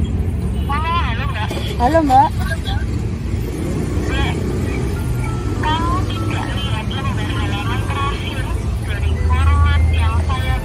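A song with a singing voice over a steady low rumble.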